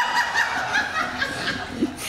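A roomful of people laughing and chuckling together at a joke.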